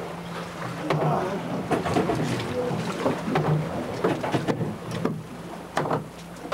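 Fishing boat's engine running steadily at idle, with scattered sharp knocks over it.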